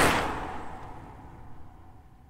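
A whoosh sound effect dying away over about a second, then fading to a low tail.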